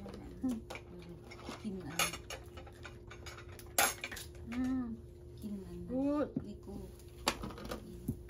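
Tableware and utensils clinking against dishes and a metal pot as people eat, a handful of sharp clicks spread through, with short murmured voice sounds between them.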